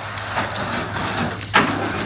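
Paper shopping bag rustling close to the microphone as it is handled, with a sharper crinkle or bump about one and a half seconds in.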